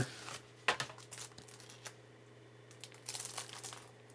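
Handling of a shrink-wrapped Blu-ray case as its cardboard slipcover slides off: quiet, scattered rustles and clicks of plastic wrap and card, with a short burst of crinkling about three seconds in.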